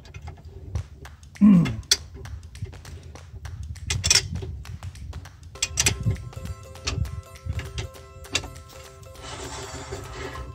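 Light metal clicks and knocks from a trailer wheel hub as channel-lock pliers tighten the spindle nut and the brake drum is turned by hand, preloading the wheel bearings. Background music plays, with steady tones coming in about halfway through and a short hiss near the end.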